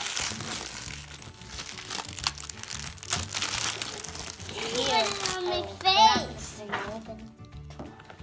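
Thin foil wrapper of a giant Kinder Surprise Maxi chocolate egg crinkling and crackling as it is torn off by hand, a dense run of small crackles for the first five seconds. About five to six seconds in, a child's voice rises briefly over it.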